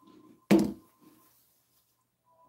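A drink set down on a desk: one sharp knock about half a second in, ringing briefly, after a short soft sound.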